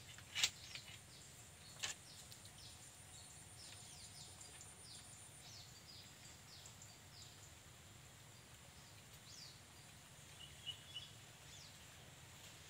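Faint, quick downward chirps of a small bird, repeated about twice a second, with a short trill near the end. Two sharp clicks come in the first two seconds, and a thin high whine runs through the first half.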